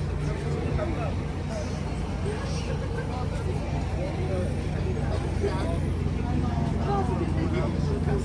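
Busy city-street ambience: a steady low traffic rumble with scattered voices of people passing nearby.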